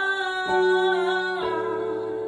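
A woman singing a slow worship song, holding a long note with vibrato, over sustained electronic keyboard chords that change twice.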